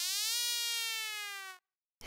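Synthesized tone from a touchscreen turntable instrument, glides up in pitch, then sags slowly downward and cuts off suddenly about a second and a half in.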